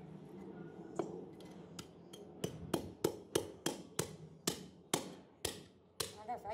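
Butcher's cleaver chopping through a section of mutton ribs on a wooden chopping block: a few scattered knocks, then from about two seconds in a steady run of about ten sharp chops, roughly three a second.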